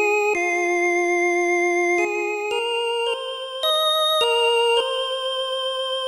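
Yamaha PSR-S series arranger keyboard playing a slow single-note lead melody for a mor lam song intro. It uses a sustained synth-like voice with a slight vibrato. The notes are held up to about a second and a half each and step mostly upward.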